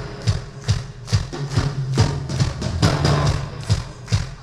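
A live band playing an instrumental passage without vocals: a steady drum beat of about two hits a second over a sustained bass line.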